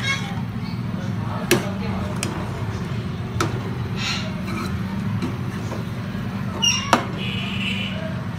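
Metal spoon stirring and turning chicken and capsicum in a frying pan, with sharp knocks of the spoon against the pan about one and a half, three and a half and seven seconds in, over a steady low hum.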